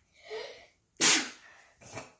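A person's sudden, loud, explosive burst of breath about a second in, sneeze-like, fading over half a second, after a brief short vocal sound.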